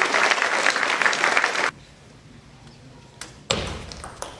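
Spectators in a hall applauding and cheering after a table tennis point, cut off abruptly a little under halfway through. Then a quiet room, with a few sharp knocks near the end as play resumes.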